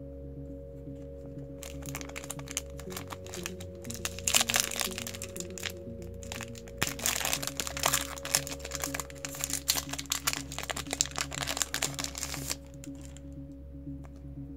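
Foil wrapper of a trading-card booster pack crinkling and tearing as it is opened by hand. It comes in two crackly runs, from about two seconds in to the middle and again to near the end, over steady background music.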